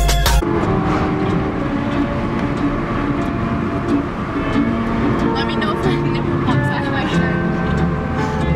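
Driving noise heard from inside a moving car, with music and voices over it. A bass-heavy music track cuts off suddenly about half a second in.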